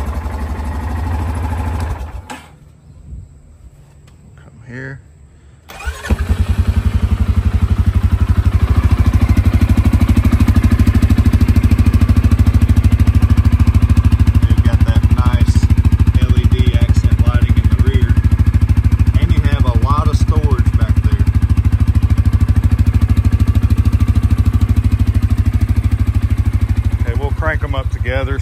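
Single-cylinder ATV engines idling: a brief stretch of engine sound, a quieter gap of a few seconds, then a steady, loud idle recorded close to an exhaust muffler from about six seconds in, with the Yamaha Kodiak 450 and CFMOTO CForce 500 both running.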